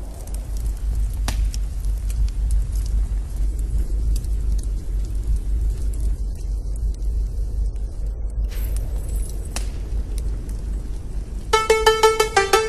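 A steady low rumble with scattered clicks and knocks over a faint hiss. Rhythmic music starts just before the end and is louder than the rumble.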